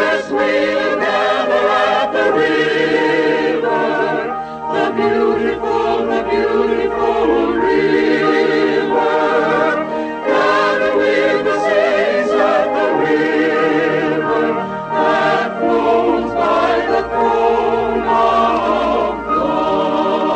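A choir singing a hymn in long, wavering held notes, with brief dips between phrases.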